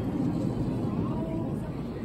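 Indistinct voices of people nearby over a steady low rumble, with no words clear.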